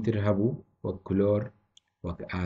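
Speech: a man's voice in two short phrases.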